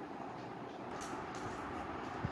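Low, steady background noise with no distinct event: room tone.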